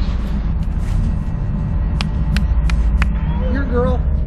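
A steady low rumble throughout, with four sharp clicks in quick succession about halfway through and a brief wordless vocal sound near the end.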